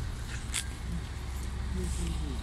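Brisk footsteps on a paved railway platform over a steady low rumble, with a sharp click about half a second in.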